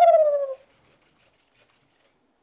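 NAO humanoid robot's synthetic voice holding one long, high-pitched vocal sound that rises and then slowly falls, ending about half a second in; then near silence.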